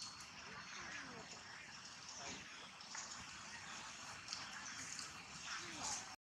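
Faint, indistinct vocal sounds, a few short rising and falling snippets, over a steady background hiss.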